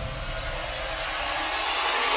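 Logo-intro sound effect: a rushing noise riser swelling slowly, with the low rumble of an earlier impact dying away underneath.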